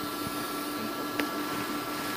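Steady machine hum with a constant pitched whine running through it, and one faint click about a second in.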